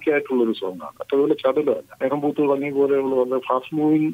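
Speech only: a person talking, with short pauses between phrases.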